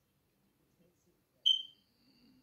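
A single short, high-pitched beep about one and a half seconds in, fading quickly; otherwise near silence.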